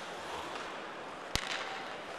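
Low, steady hockey-arena crowd noise, with one sharp crack of a stick striking the puck about two-thirds of the way through.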